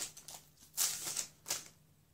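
Pokémon trading-card booster pack being handled: the opened wrapper rustles and the cards slide out of it in a few short bursts, with the bursts stopping about a second and a half in.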